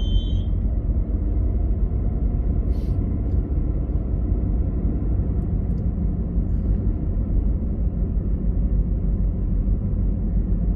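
Steady low rumble of a car driving at street speed, heard from inside the cabin: engine and tyre noise.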